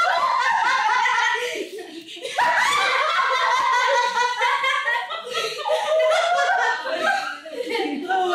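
Loud laughter from people in the room, mixed with bits of indistinct talk, with a brief lull about two seconds in.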